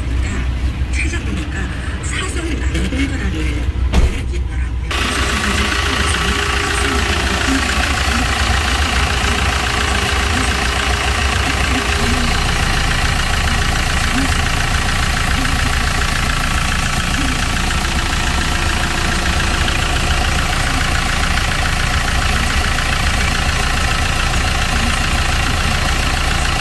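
Hyundai Porter double cab's common-rail diesel engine idling steadily. It sounds muffled at first. After a sharp click about four seconds in, it becomes much louder and clearer with the engine uncovered.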